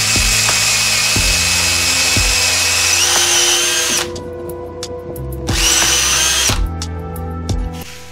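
Cordless drill boring into a wooden block in two runs: a long run of about four seconds whose whine steps up in pitch near its end, then a shorter run of about a second.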